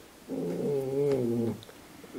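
A man's drawn-out hesitation sound, a single held 'ehh' lasting about a second that wavers slightly in pitch.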